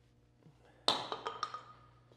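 A single sharp knock about a second in that rings briefly with a clear ping as it fades, followed by a few light taps.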